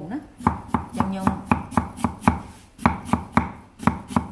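A kitchen knife chopping through firm peeled produce onto a thick wooden chopping board. The knocks come in a steady rhythm of about four a second, with a short break a little past halfway.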